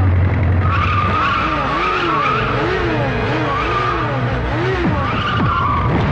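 Motorcycle film sound effect: the engine revs up and down over and over, about twice a second, under a wavering tyre squeal of a bike skidding around.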